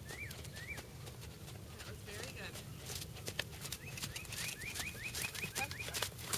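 A small songbird chirping, with a few rising-and-falling notes at first and a quick run of them in the second half. Under the chirps come the hoofbeats of a horse trotting on sand, with clicks that grow more frequent towards the end.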